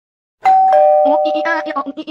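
Elevator arrival chime, a two-tone ding-dong with a higher note and then a lower note held for about a second, starting about half a second in. A voice chatters rapidly over it in the second half.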